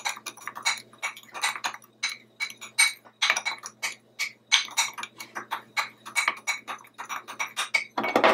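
Metal spoon stirring dry gram flour and turmeric powder in a glass bowl, clinking and scraping against the glass in quick, irregular taps, several a second.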